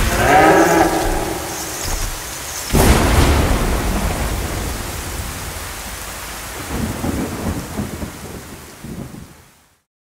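Heavy rain with thunder: a sudden loud thunderclap about three seconds in that rumbles away, preceded by a brief bull's bellow at the start. The sound fades out to silence just before the end.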